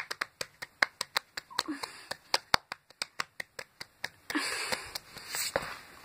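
Hands drumming on a wooden tabletop as a makeshift drumroll, a quick run of taps at about seven a second, then about a second and a half of hissing noise near the end.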